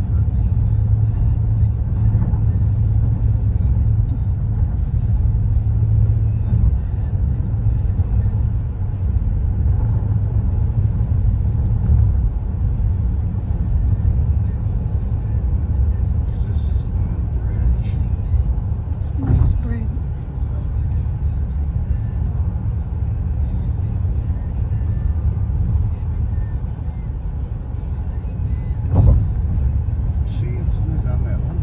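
Steady low road rumble of a car heard from inside its cabin while driving at speed, with a few brief sharp knocks, the loudest near the end.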